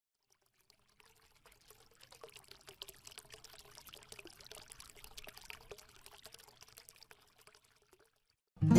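Faint, dense crackling and trickling of many tiny clicks, building over the first two seconds and fading out shortly before the end.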